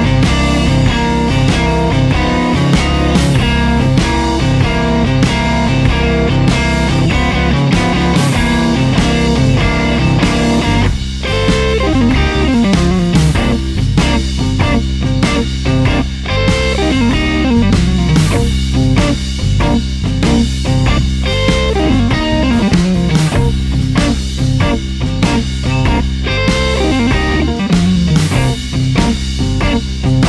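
Electric guitar, a Strat-style solid body, playing a fast blues lick that uses small sweep-picked arpeggios in descending runs in C Dorian over a C9 chord, over a backing track with a steady bass and beat.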